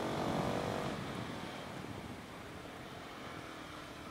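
Husqvarna 701 supermoto's single-cylinder engine, geared shorter with a smaller front sprocket, heard under way from on the bike. Its steady engine note fades after about a second, leaving mostly a rush of wind and road noise.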